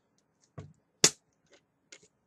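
Plastic soda bottle handled and its screw cap twisted open: a low knock about half a second in, a sharp snap about a second in, and a faint click near the end.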